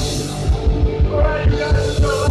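Live heavy metal band playing loudly: electric guitars holding sustained chords over a drum kit, with a steady kick-drum beat of about three to four hits a second.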